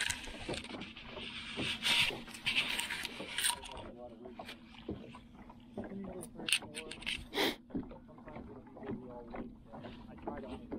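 Fishing line hissing off a spinning reel as a lure is cast, for about three and a half seconds, then a few sharp clicks from the reel as it is worked. A steady low hum runs underneath.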